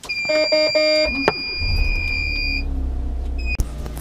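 Car's electronic warning chime, a steady high beeping tone, then the engine starting about a second and a half in and settling into a low idle.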